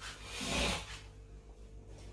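A soft scrape of a plastic spatula dragged across a plate, swelling about half a second in and fading within a second.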